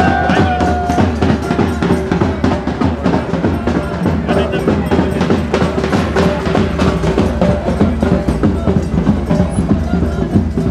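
Band music with drums keeping a steady beat under held low notes, and a melody line that drops out about a second in.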